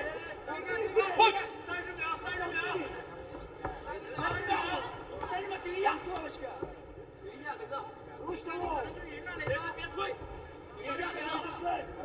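Men's voices shouting and calling out over arena noise, with a couple of sharp smacks of strikes landing near the start.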